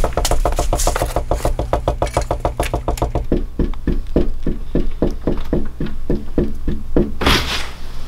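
Rapid, steady knocking on a wooden door: fast strokes for about three seconds, then about four knocks a second, with a short louder noise near the end as the door is opened.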